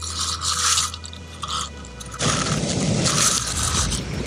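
Irregular bursts of scraping and rustling noise: a long one at the start, a short one in the middle, and a longer, louder one in the second half.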